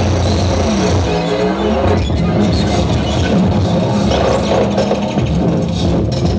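Live electronic music from synthesizers and electronics played at a table: a dense, loud, continuous wash of low droning tones with pitches that swoop up and down, most clearly in the first couple of seconds.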